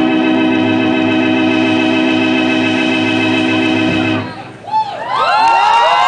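A loud, steady organ-like chord is held and then cuts off about four seconds in. About a second later the audience breaks into cheering, with high shouts that glide up and down in pitch.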